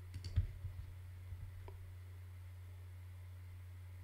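Clicking at a computer: a quick cluster of clicks in the first half second, then a couple of fainter ticks about a second later, over a steady low hum.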